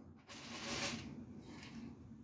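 Faint hiss of high-voltage corona discharge from an ion lifter powered at about 200 kV while it holds a ruler aloft. The hiss swells for about a second near the start and then settles lower, over a weak low hum.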